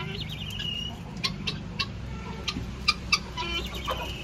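Backyard chickens and guinea fowl calling: many short, sharp clucks and chirps, with a brief rattling call at the start and another near the end.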